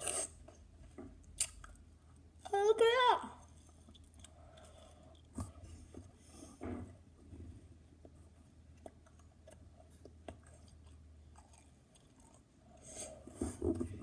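A person chewing a sticky mouthful of sour Skittles with closed mouth, with scattered small wet clicks of the mouth. About three seconds in comes a brief, rising 'mm' hum through the closed mouth, the loudest sound here.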